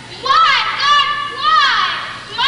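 A child's high-pitched voice calling out lines in short, emphatic phrases that rise and fall in pitch, about four of them in two seconds.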